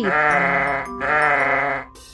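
A sheep bleating twice; each bleat lasts nearly a second and wavers in pitch.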